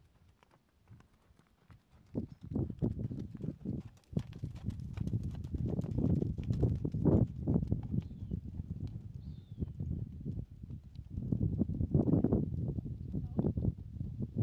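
Horse's hooves beating on a dirt arena at a trot: dull, rhythmic hoofbeats that start about two seconds in and grow louder as the horse comes close.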